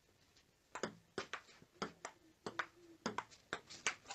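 Table tennis rally: a ping-pong ball clicking off the paddles and the table, a faint, quick, irregular run of sharp taps starting just under a second in.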